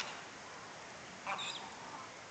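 Steady outdoor background hiss with one short, high chirp about a second and a half in.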